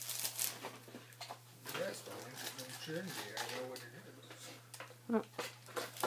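Wrapping paper rustling and tearing in short crackles as a gift is unwrapped by hand, with a soft voice murmuring in the middle.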